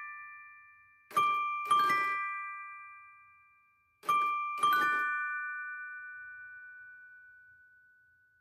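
Mr. Christmas Santa's Musical Toy Chest (1994) playing a slow phrase: its animated figures strike metal chime plates with mallets, two notes about half a second apart, then another pair about three seconds later, each left ringing and fading slowly.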